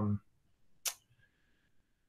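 The end of a drawn-out spoken "um", then near silence broken by a single short, sharp click just before a second in.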